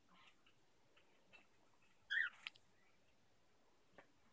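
Near silence (room tone), broken about two seconds in by one brief, faint, high-pitched squeak.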